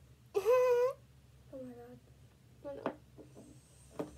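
A high, meow-like cry about half a second long, then a shorter call that drops in pitch. A few brief murmurs and a sharp click follow near the end.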